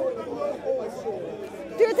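Speech only: several people talking over one another in an outdoor crowd, then a louder voice starts asking a question near the end.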